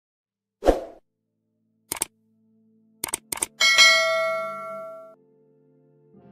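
Subscribe-button animation sound effects: a short soft pop, then quick clicks in pairs, like mouse clicks, then a bright bell ding that rings out and fades over about a second and a half.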